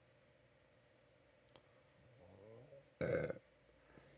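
A man's single short, guttural "uh" from the throat about three seconds in, loud against an otherwise quiet room.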